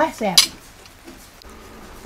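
A woman's short exclamation of "ah, saep!" (spicy-delicious), rising then falling in pitch and ending in a sharp "s", in the first half second. After it come a few faint clinks of cutlery on plates.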